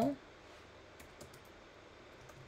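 A few faint computer keyboard keystrokes, about a second in and again near the end.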